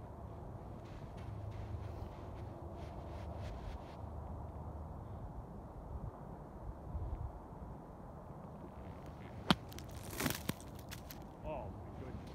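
Golf bunker shot: a wedge striking through the sand, heard as a sharp crack followed a moment later by a short sandy splash, about ten seconds in, over a steady low rumble.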